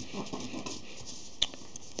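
Thin card being folded and creased by hand: soft, irregular rustling and scraping, with one sharp click about one and a half seconds in.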